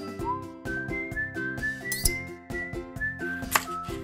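Background music led by a whistled melody over steady chords, with a sharp tap near the end.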